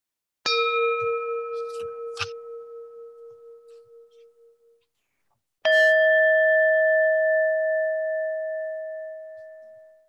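Two electronic bell-like timer tones. A lower ding about half a second in rings down over about four seconds, marking 30 seconds left. A higher, louder ding about six seconds in rings for about four seconds, marking that time is up.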